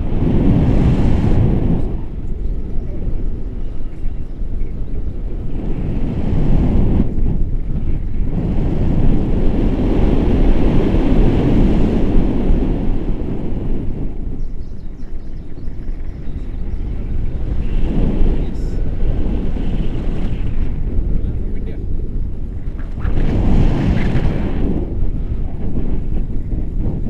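Airflow buffeting a selfie-stick action camera's microphone in paragliding flight: a loud low rushing that swells and eases in several gusts.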